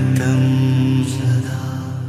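A voice chanting in long held notes over music, in the manner of a mantra.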